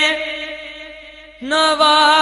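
A solo voice singing a naat with no instruments. A long held note with vibrato fades away with echo, and a new long note starts about one and a half seconds in.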